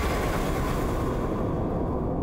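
Low, noisy rumble of a title-card boom sound effect dying away, its upper hiss fading out while the deep rumble carries on.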